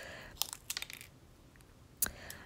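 A few faint, light crackles and small clicks in the first second, then near silence.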